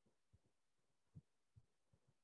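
Near silence: room tone with a few faint, dull low knocks spaced irregularly, the clearest a little over a second in.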